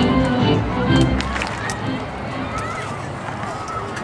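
Music playing over a ballpark sound system that fades out about a second in, leaving the chatter of crowd voices in the stands.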